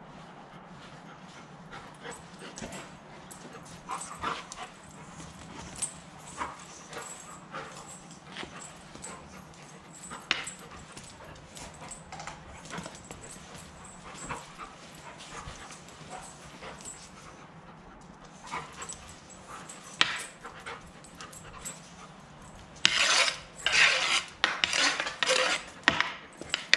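Black Labrador playing with a hockey stick on a concrete garage floor: scattered clicks and scrapes from its claws and the stick blade on the concrete. About three seconds before the end comes a dense run of loud, rapid scraping knocks.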